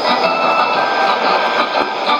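Shortwave AM broadcast on 17850 kHz through a Sony ICF-2001D receiver, smothered by white-noise digital jamming: a loud, steady hiss with a few faint held tones over it.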